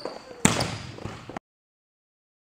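A volleyball being spiked: one sharp smack of hand on ball about half a second in, echoing through a gym hall. The sound then cuts off abruptly.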